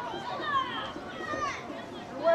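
High-pitched children's voices shouting over one another, with several calls falling in pitch.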